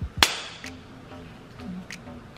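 A single sharp snap about a quarter second in: a blue nitrile glove's cuff snapped against the wrist. Quiet background music plays under it.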